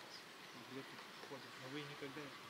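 Faint buzzing of a flying insect, wavering in pitch.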